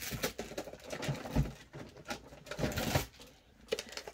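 Hands rummaging through markers and handling things on a tabletop: an irregular run of small clicks, taps and rustles, with a soft knock about a second and a half in.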